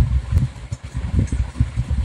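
Low, uneven rumble of background noise, with a few faint ticks, in a pause in speech.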